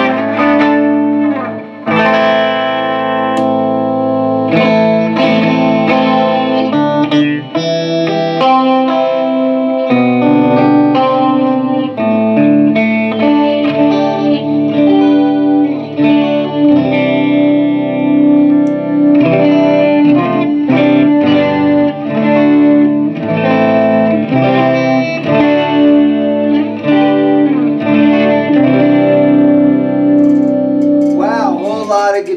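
The 12-string neck of a BC Rich Bich double-neck electric guitar, played through a Hughes & Kettner Black Spirit 200 amp: chords and single notes ring out and change every second or two, with effects on the tone.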